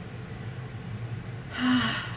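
A woman's breathy sigh near the end, after a short quiet pause.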